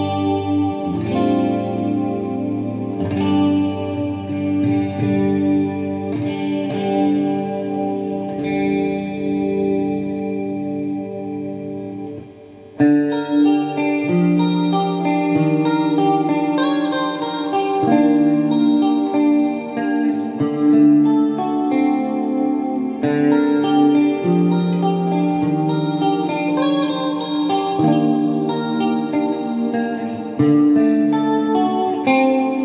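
Electric guitar (a black SG) played in sustained chords and licks through a Marshall JMP-1 preamp and JFX-1 effects unit into Marshall speaker cabinets. About twelve seconds in the playing briefly drops away, then comes back louder.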